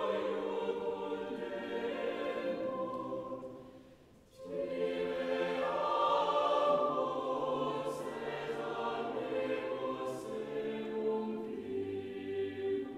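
A choir singing a slow, sustained piece. One phrase dies away about four seconds in, and after a brief pause a new phrase enters, with a few crisp 's' consonants later on.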